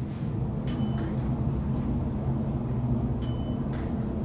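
Montgomery traction elevator car riding up: a steady low hum from the car in motion, with two short high tones about two and a half seconds apart.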